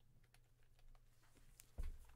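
Computer keyboard typing: a string of faint, irregular key clicks, with one louder thump near the end.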